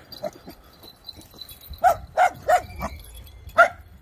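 Village dogs barking in short, separate barks: a quick run of three about two seconds in and one more near the end. They are alarm barks from a pack on guard against a stranger among them.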